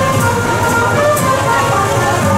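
Engine of a small truck running as it drives slowly past, with music playing over it.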